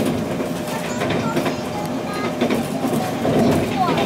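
Running noise heard from inside a moving electric train: a steady rumble of wheels on rail, with a few brief high whistle-like tones near the end.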